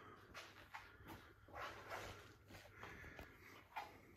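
Near silence: quiet room tone with faint scattered clicks and rustles.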